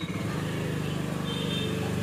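A small motor scooter's engine throttling up from idle into a steady drone as the scooter pulls away.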